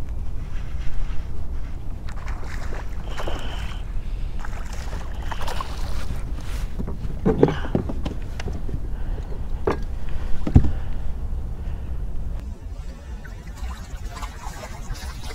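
Wind rumbling on the microphone of a kayak on open water, with a few sharp knocks, the loudest about ten and a half seconds in. The wind eases near the end.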